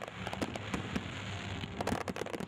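Aerial fireworks crackling: a dense run of small sharp cracks and pops over a steady hiss.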